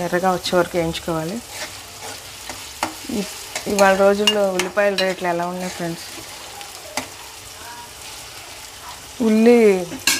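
Sliced onions and green chillies sizzling steadily in oil in a kadai, with a few sharp clicks of a ladle against the pan as they are stirred. A voice speaks over it three times: at the start, in the middle and near the end.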